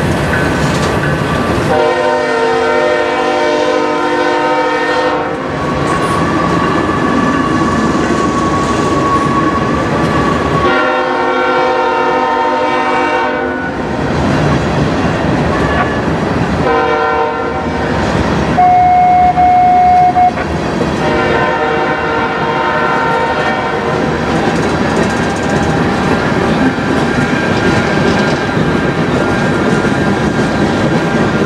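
Loaded freight train of tank cars rolling past, wheels clicking over the rail joints, while a diesel locomotive horn sounds the long-long-short-long grade-crossing signal. A high, steady single-tone squeal rings for about two seconds just after the short blast.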